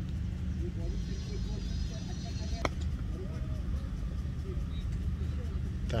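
Outdoor cricket-ground background: a steady low rumble with faint distant voices, broken by a single sharp knock of a cricket ball about two and a half seconds in, on a delivery that yields no run.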